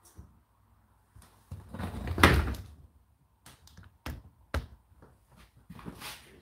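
Door of a Hotpoint NSWR843C front-loading washing machine being pulled open after the wash cycle has ended. A dull thud about two seconds in is the loudest sound, followed by a few sharp clicks from the door and its hinge.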